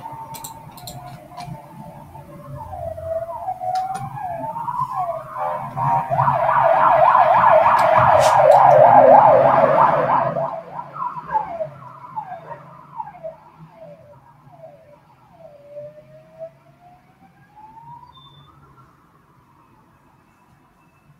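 A siren passing: a wailing tone that rises and falls, switching to a fast warble at its loudest, about six to ten seconds in, then fading back to slower wails.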